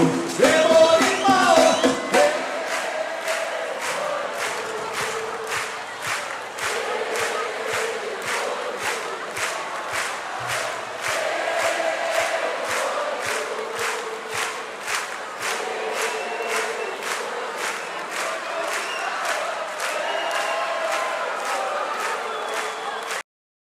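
Capoeira roda music: a group singing the chorus over steady hand claps about twice a second. It is louder with a voice rising in pitch in the first two seconds, then settles into a steady chant.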